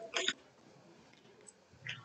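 A man gulping water from a plastic bottle: one short swallowing sound just after the start, and another brief sound near the end.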